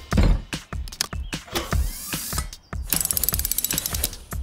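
Cartoon sound effects of a toolbox being set down and opened: a heavy thump at the start, scattered clicks and clatters, then a fast ratcheting run of clicks for about a second near the end as the box unfolds open.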